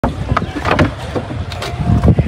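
A few sharp wooden knocks as planks of a bed frame are handled and loaded into an SUV's cargo area, over a steady low rumble.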